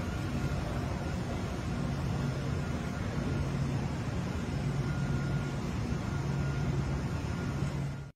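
Steady machinery hum of a Bitcoin mining facility with immersion-cooled mining rigs: fans, cooling equipment and air handling running continuously, with a low droning tone under an even whoosh.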